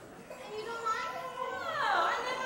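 Children's voices talking and calling out indistinctly, with one voice sliding down in pitch near the end.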